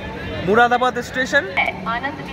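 A person's voice talking briefly over a steady low hum.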